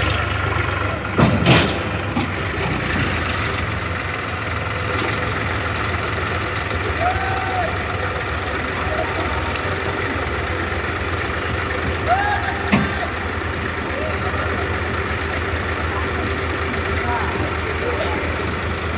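Diesel tractor engines idling steadily beside a tipping trailer that has just dumped soil, with a couple of loud knocks about a second in and a few short calls later.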